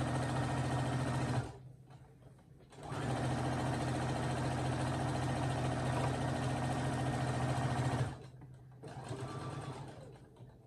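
Brother SE1900 sewing machine stitching at a steady speed, top-stitching along the edge of a fabric towel. It stops about a second and a half in, runs again from about three seconds to about eight seconds, then stops.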